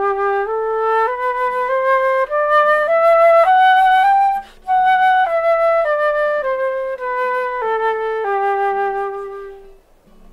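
Silver concert flute playing a slurred G major scale over one octave, stepping up note by note from G to the G above and back down. It pauses briefly for a breath at the top, and the last low G is held for over a second.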